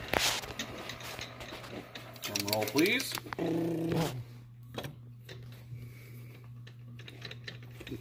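Metal lathe running with a snowblower drive shaft spinning in its chuck: a steady low hum, with a few sharp metallic clicks in the second half.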